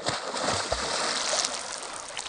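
Water splashing as a person dives headfirst into a lake, with a sharp slap at the entry and then a steady hiss of spray and churned water that eases off near the end.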